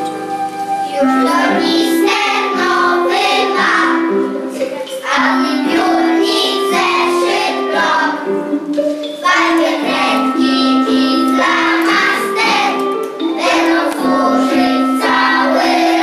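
A group of young children singing a song together over a steady instrumental accompaniment of held notes.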